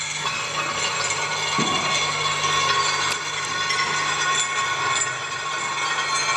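Experimental improvised music played on objects: a dense, steady grinding texture layered with several held, ringing tones, low to high, and a few sharp clicks near the middle.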